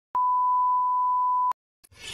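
Television test-pattern tone: one steady, pure, high beep that starts just after the beginning, holds unchanged for about a second and a half, then cuts off sharply.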